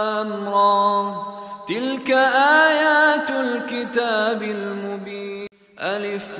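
Quran recitation by a solo voice, in long held notes with ornamented bends in pitch; a new phrase begins under two seconds in. The sound cuts out briefly near the end, then the voice resumes.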